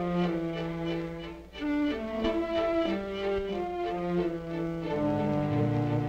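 Orchestral film score: bowed strings, cello and violins, playing a slow line of held notes, with a short dip about a second and a half in and lower strings coming in near the end.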